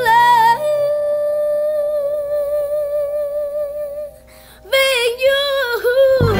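A boy's high solo singing voice, almost unaccompanied, holds one long steady note for about three seconds, then after a short drop sings another wavering phrase near the end.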